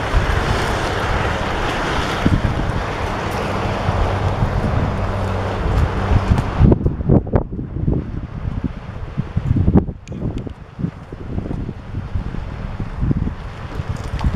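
Wet/dry shop vacuum running steadily as its floor wand sucks standing water off a concrete driveway, cutting off suddenly about seven seconds in. After that, wind gusts buffet the microphone.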